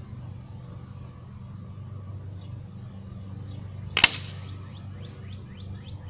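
A steady low hum, with one sharp crack about four seconds in followed by a few faint high chirps.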